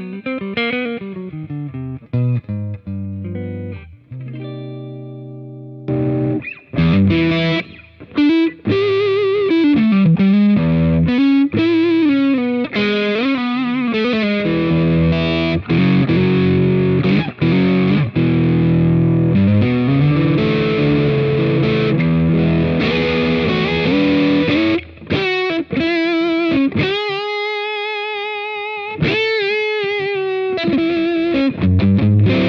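Gibson Custom Shop 1959 ES-335 semi-hollow electric guitar with humbucking pickups, played through an amp. It starts with quieter single notes, holds a chord about four seconds in, then from about six seconds plays louder, denser lead lines, with wide vibrato on held notes near the end.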